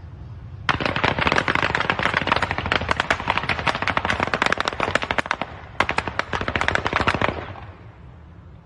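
Rapid automatic gunfire in two long bursts: one of about five seconds starting near a second in, then after a short gap a second burst of about a second and a half.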